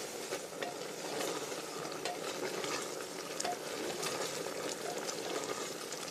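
Wooden spatula stirring mutton and potato curry in an open aluminium Hawkins pressure cooker, with a steady sizzle of the curry frying and scattered taps and scrapes of the spatula against the pot.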